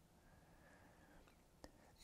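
Near silence: room tone in a pause of speech, with one faint short click near the end.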